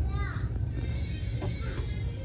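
Background music with a steady low beat, and a short falling high-pitched sound about a quarter second in.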